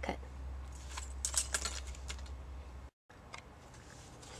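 Light rustling and a quick cluster of crisp clicks from die-cut glitter cardstock strips being handled, a little over a second in, over a low steady hum. The sound drops out completely for a moment about three seconds in.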